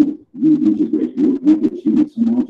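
Muffled, low voice-over speech with the words hard to make out, broken into quick syllables.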